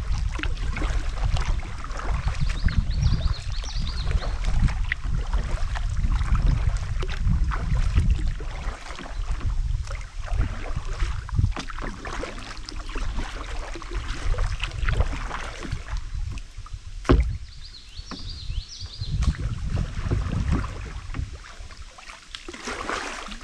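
Kayak paddle dipping and dripping, with water splashes and clicks against the hull over a low rumble that eases about halfway through; one sharp knock comes near the end.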